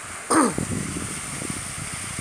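A single short, loud vocal call about a third of a second in that falls steeply in pitch, followed by about a second of faint rustling and crackling.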